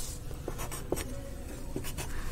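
Pencil scratching on graph paper as a line is drawn and marked, with a few light clicks.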